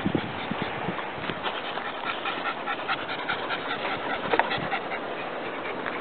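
A dog panting in quick, regular breaths.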